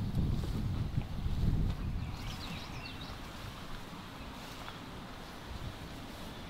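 Wind buffeting the microphone: an uneven low rumble that eases off after about two seconds. A few faint high chirps come about two seconds in.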